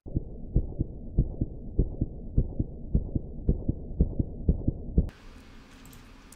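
Heartbeat sound effect: muffled double thumps (lub-dub), about nine pairs, coming slightly faster as it goes, then cutting off suddenly about five seconds in.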